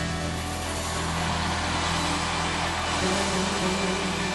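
Live band holding a sustained closing chord with steady low bass tones, under a dense wash of crowd noise from a large audience.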